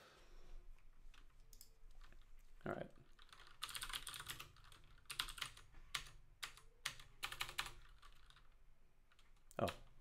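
Computer keyboard typing: runs of quick key clicks through the middle, thinning out toward the end.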